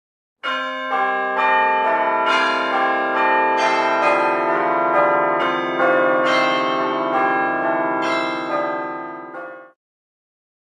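Bells ringing in a peal, a new bell struck about every half second so that the tones overlap and ring on, fading away near the end.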